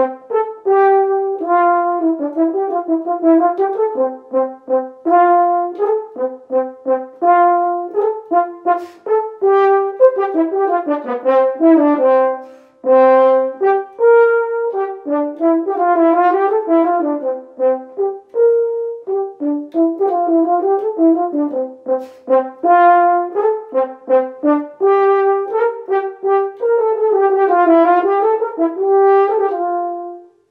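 Solo French horn playing Variation 2 of a classical-era theme and variations: quick, detached notes with grace notes and fast sixteenth-note runs that climb and fall, with one short breath-break about halfway through.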